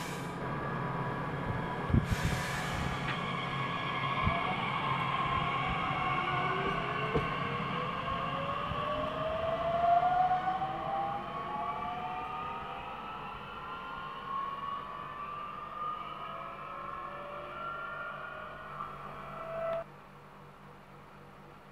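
Bombardier Talent 2 (class 442) electric multiple unit pulling away, its traction inverters whining in several tones that climb steadily in pitch as it gathers speed. Two short hisses come in the first couple of seconds.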